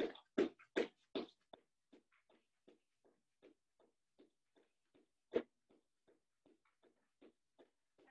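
Sneakered feet landing on a hardwood floor during jumping jacks, a thud about two and a half times a second, louder for the first second and a half and then much fainter, with one sharper thump about five seconds in.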